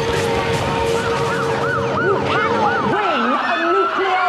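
Several emergency-vehicle sirens sounding at once, their pitch rising and falling quickly from about a second in, over a steady hum that stops about three seconds in.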